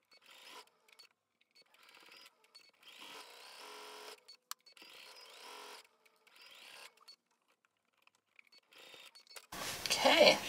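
Electric sewing machine stitching a seam, heard faintly in two short runs about three and five seconds in, with a single light click between them.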